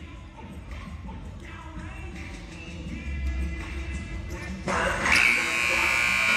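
Music playing over a basketball arena's sound system with the gym's crowd murmur, growing louder. About five seconds in, a loud, steady electronic buzzer tone sounds.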